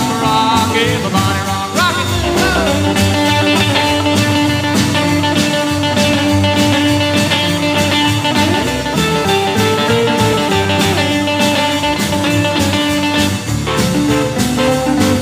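Instrumental break of a 1950s-style rockabilly song: electric guitar and band over a steady drum beat.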